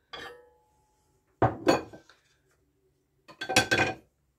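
Kitchen utensils and cookware knocking and clinking as they are handled and set down, in three short clusters: one right at the start with a brief ringing tone, one about a second and a half in, and one near the end.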